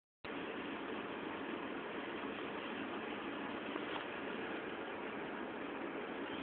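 Steady hiss of background noise, with a faint click about four seconds in.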